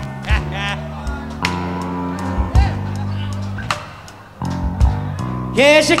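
Live electric blues band vamping: a bass line holding low notes under drum hits, with short electric guitar phrases of bent notes. The music dips briefly about two-thirds through. Just before the end, a voice-like bending line comes in.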